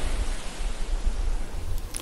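Intro sound effect for a logo animation: a rushing noise that spans low rumble to high hiss, dying away near the end.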